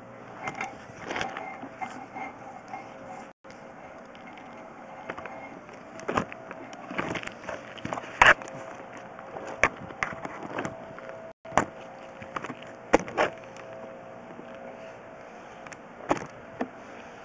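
Sewer inspection push-camera cable being fed along the line: irregular sharp clicks and knocks over a steady low hum, the strongest click about eight seconds in. The sound cuts out for an instant twice.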